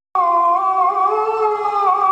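A man's voice, amplified through a handheld microphone, chanting one long drawn-out note that wavers slightly in pitch. It comes in just after a brief silence at the very start.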